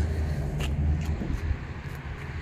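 Low rumble of passing road traffic that eases off about a second and a half in, with a couple of faint knocks.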